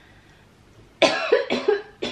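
A woman coughing: a quick run of three coughs starting about a second in.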